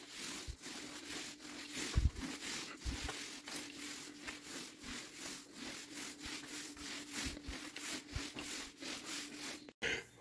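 A T-bar floor-finish applicator pad rubbing over a hardwood floor in quick, evenly repeated strokes as it spreads polyurethane, with a faint steady hum underneath. There are low thumps about two and three seconds in.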